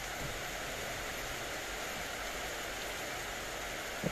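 A steady, even hiss with no distinct sounds in it.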